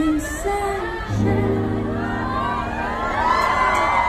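Live pop vocals: a female singer's voice, then a steady low held note comes in about a second in, and many crowd voices singing and whooping along near the end.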